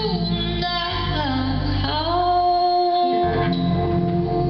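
Live song: a woman's voice sings a wordless line over instrumental accompaniment. It glides in pitch at first, then rises into a long held note from about halfway through.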